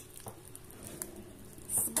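A plastic spoon stirring baked potato chunks in a clay pot: faint soft scrapes and squishes, with a light click about halfway through.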